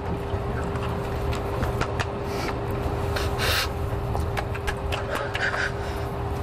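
Cockpit ambience of a parked Airbus A380: a steady low rumble and a steady hum from the aircraft's systems, with clothing rustles and small clicks as people move and embrace in the seats. A short hiss comes about three and a half seconds in.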